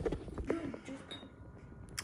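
Quiet classroom room tone with a brief faint voice in the background about a quarter of the way in, and a small click near the end.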